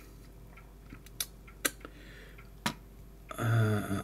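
A few short, sharp clicks, about three of them spread over a couple of seconds, from a cassette player's circuit board and plastic housing being handled. A man's voice starts near the end.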